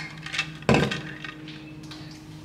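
A few small clicks, then one sharp knock about two-thirds of a second in: a hard kitchen item knocked or set down on the counter or hob. Fainter ticks follow over a steady low hum.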